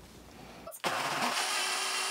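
Countertop blender switched on about a second in and running steadily, blending a thin tomato purée, with a constant hum under the motor noise.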